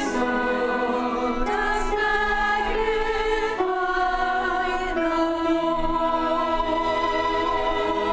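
A church choir singing held chords, with a small string ensemble of violins, cello and double bass accompanying. The chords change every second or two.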